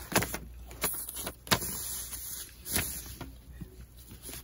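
A paper circle, folded in quarters, being opened out and pressed flat on a table by hand: soft rustling with a few sharp paper crackles.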